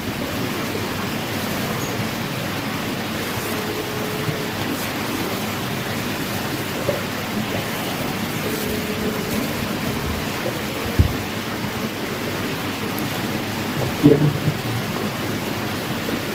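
Steady hissing noise with no clear pitch, and a single soft thump about eleven seconds in.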